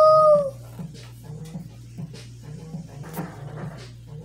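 A drawn-out howl, rising in pitch and then held steady, which stops about half a second in. A faint, evenly repeating low pattern follows, with a brief rustle a little after three seconds.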